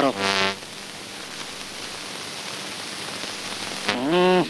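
A man's short shouted word, then a steady, even hiss for about three seconds with no clear pitch or rhythm, until speech starts again at the end.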